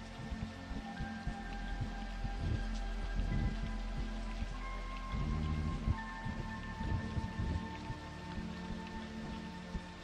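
Steady heavy rain with low rumbles of thunder, under the held synthesizer notes of the film score, which shift to new pitches about halfway through.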